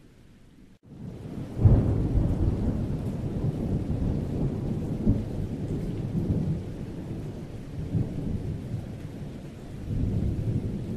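A deep rumbling noise, like rolling thunder. It comes in suddenly about a second and a half in, after a brief near-silent dip, and rolls on with several surges.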